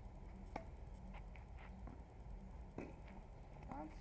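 A few scattered sharp knocks of a tennis ball being served and bouncing on an asphalt court, the clearest about half a second in and about three seconds in.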